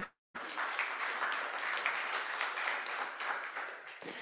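Audience applauding: a dense patter of many hands clapping that starts suddenly just after the start and eases off toward the end.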